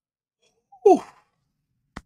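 A man's short exclamation "oh", falling steeply in pitch, about a second in, followed by a single brief click near the end.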